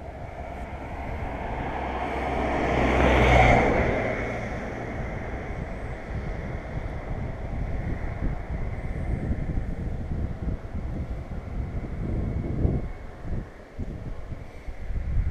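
A road vehicle passes unseen, growing louder to a peak about three and a half seconds in and then fading away, followed by low rumbling background noise.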